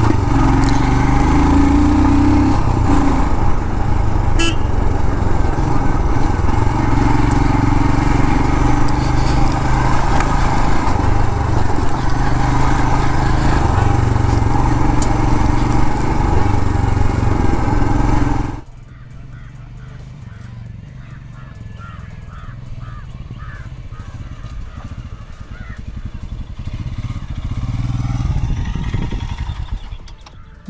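Royal Enfield Scram 411's single-cylinder engine running under way on a dirt track, heard from the rider's position with wind noise over it. About 18 seconds in the sound drops suddenly to a much quieter engine sound, which slowly grows louder near the end.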